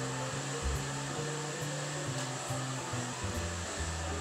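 Hairdressing scissors cutting through a thick ponytail: a few faint, short snips over a steady hiss.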